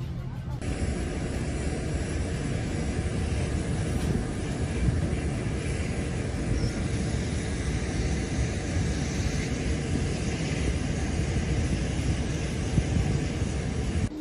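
Jet engines of a twin-engine Airbus A330 military transport running close by: a loud, steady rushing noise that starts abruptly just after a brief, quieter cabin hum.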